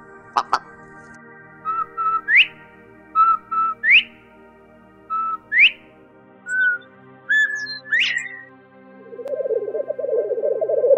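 Partridge calls in repeated whistled phrases: short flat notes followed by a quick upward-sweeping whistle, three times, then a few higher single notes and another upward sweep. A steady background music drone runs underneath. A buzzy, rasping sound begins near the end.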